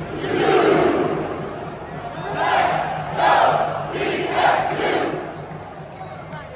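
Huge stadium football crowd shouting in unison: one long shout near the start, then three shorter shouts about a second apart.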